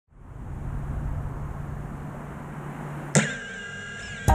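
A steady low hum over a hiss, consistent with a 5-inch FPV quadcopter's motors spinning at idle while armed on the ground. About three seconds in, a sudden loud sound with several sustained, partly gliding tones cuts in.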